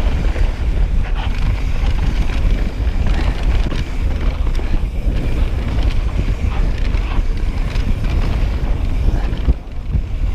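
Wind buffeting a chest-mounted camera's microphone as a mountain bike descends a dirt singletrack at speed, mixed with the rumble of knobby tyres on the trail and a few light knocks from the bike over bumps. The rush dips briefly near the end.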